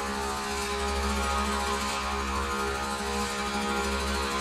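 Slow meditative music built on a steady, sustained drone of held tones.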